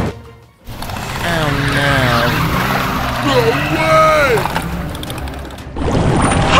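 Background music with a voice-like melody gliding up and down. It dips briefly at the start and comes back about half a second in.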